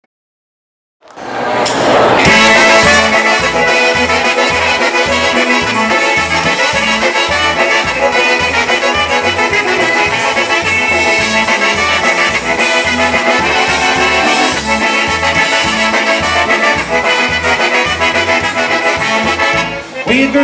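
A live polka band playing an instrumental introduction, led by accordion and concertina with trumpets, fiddle, bass guitar and drums over a steady bass beat. The music starts about a second in, after silence.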